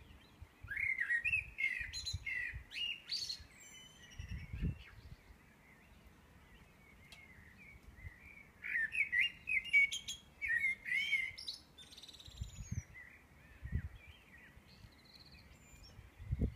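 A songbird singing in two long phrases of warbling notes, one starting about a second in and one about eight seconds in, with shorter snatches of song between.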